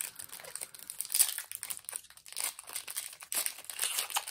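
Foil Pokémon booster pack wrapper crinkling in the hands in irregular rustles as it is worked open.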